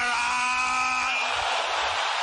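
A man's voice held in one long, loud cry that breaks off about a second and a half in, over a congregation shouting prayers aloud all at once, a dense roar of many voices.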